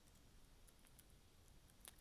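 Near silence with a few faint computer keyboard key clicks, the clearest one near the end.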